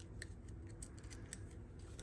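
Faint handling of a cardstock die-cut and foam adhesive dots: a few soft clicks and light rustles as fingers press and adjust the paper.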